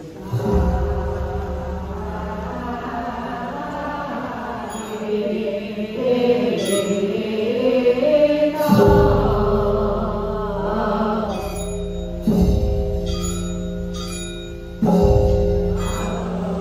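A congregation chanting together during a temple service, with held notes. A big gong is struck about four times, each stroke ringing on, and small bells ring in between.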